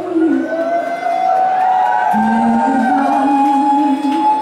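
A woman singing a slow ballad live with violin accompaniment, holding long sustained notes that step slowly in pitch.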